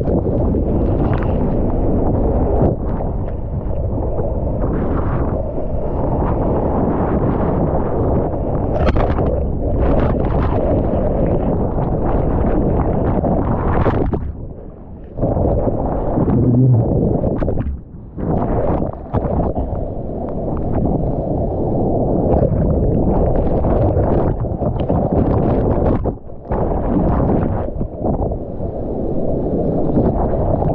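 Churning whitewater of a breaking wave heard from a camera in and under the water: a loud, muffled, continuous rush that drops away briefly a few times.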